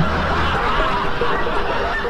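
Laughter, a dense mass of voices with no single clear speaker, like a recorded laugh-track effect.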